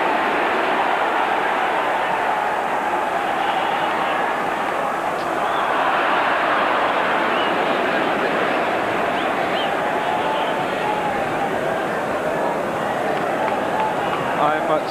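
Football stadium crowd noise: the steady din of a large crowd of many voices in the stands during play.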